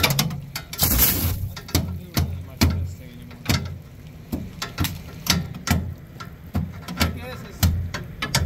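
Repeated sharp blows of a metal bar chipping frozen mustard seed and ice out from between the flighting in a grain auger's hopper. The blows come about two a second at uneven spacing, with a brief scraping rush about a second in.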